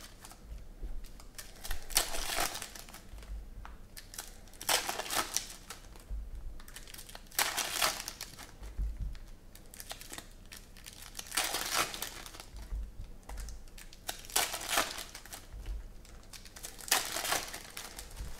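Foil wrappers of 2014 Panini Prizm football card packs crinkling as they are torn open, in bursts every few seconds.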